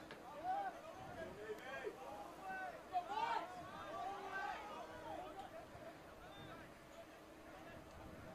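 Faint, overlapping shouts and calls of voices from the rugby pitch, busiest and loudest about three seconds in and tailing off near the end, over a faint steady hum.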